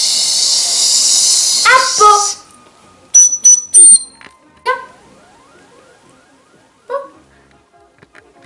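A girl making a long, loud "chhh" shushing sound, held for about three seconds and breaking off into a short voiced exclamation. A few sharp, high-pitched squeaks follow, then brief vocal sounds.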